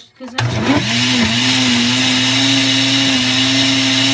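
Countertop blender switched on about half a second in on its ice-crush setting, blending a smoothie. Its motor gets up to speed and then runs steadily and loudly.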